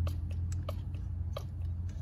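A few sharp clicks from a Mityvac hand vacuum pump being stroked to pull the turbocharger's wastegate open, over a steady low hum.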